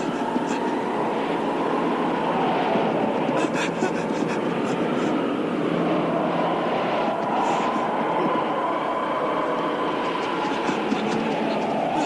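Steady rushing wind sound effect with a faint wavering whistle running through it.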